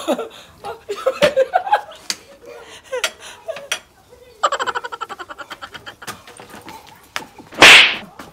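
Two people reacting to very spicy noodles without words: gasping exclamations and sharp clicks, then a rapid, stuttering run of laughter about halfway through. Near the end comes a loud burst of breath, the loudest sound.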